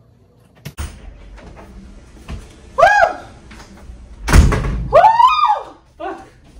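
A door opening with a sharp click, then a loud bang as it shuts about four and a half seconds in. Two short high-pitched calls rise and fall in pitch, one about three seconds in and one just after the bang.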